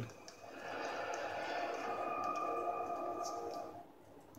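Steady held notes of background music from a cartoon's soundtrack, played through a phone's small speaker, with a higher tone joining about halfway through before it all fades out near the end.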